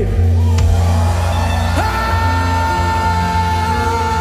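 A church congregation's praise scream over a live band holding a sustained chord, with one amplified voice letting out a long, held yell from about two seconds in.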